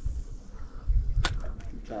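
Wind buffeting an outdoor microphone in low rumbling gusts, with one sharp tick about a second in.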